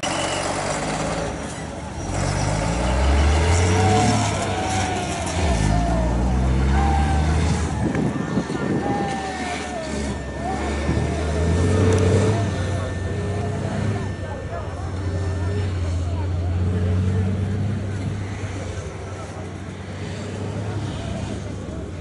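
MAN 6x6 Dakar rally truck's diesel engine working hard as it passes: its pitch climbs, drops, then climbs again, and it pulls steadily under heavy load in the second half, with people's voices over it.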